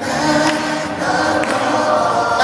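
Gospel choir singing, many voices holding long notes.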